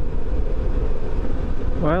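Riding noise of a 2020 Suzuki V-Strom 650 motorcycle at speed: a steady low rumble of wind and engine on the bike's camera microphone.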